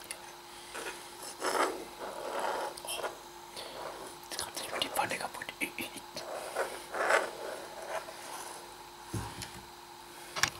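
Metal spoon scraping, stirring and clicking against a non-stick frying pan through a pan of sauerkraut and potatoes, recorded close to the microphone in short, irregular strokes.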